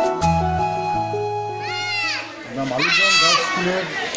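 Background music with held keyboard notes that fades about a second and a half in, followed by two high calls rising and falling in pitch, like children calling out, over lower voices talking.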